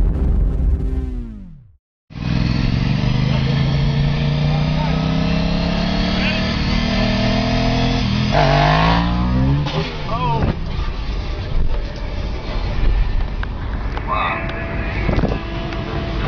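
A brief intro sting with a falling pitch, cut off after about two seconds. Then a Honda RVT sport motorcycle's engine runs at speed beside a car, with road noise and excited voices. About halfway through, the engine note rises in a couple of quick glides.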